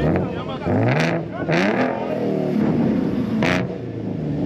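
Ford Mustang's engine revved in repeated quick blips, the pitch rising each time, with sharp exhaust bangs about a second in, again half a second later, and near the end: backfires from a car set up to shoot flames.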